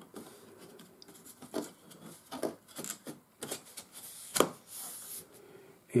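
Foam board pieces being handled and pressed into place on a layout table: a few light taps and knocks, the sharpest about four and a half seconds in, then a short soft scrape.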